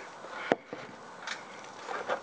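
A sharp click about half a second in and a fainter tap just after it: a hand-held airbrush being handled and set down after its nozzle cap is snugged back on.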